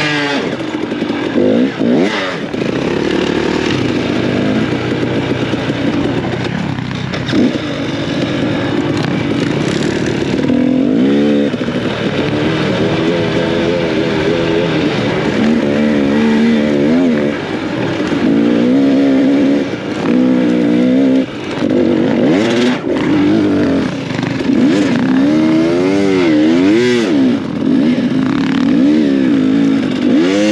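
Dirt bike engine ridden hard across sand, heard close from the rider's own bike. Its pitch climbs and drops again and again as the throttle opens and closes through the gears.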